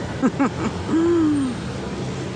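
A woman's voice: a few short syllables, then one long drawn-out vowel or hum that slowly falls in pitch, over steady street background noise.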